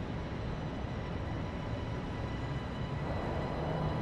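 Steady low rumbling drone with faint high held tones above it, growing a little fuller about three seconds in.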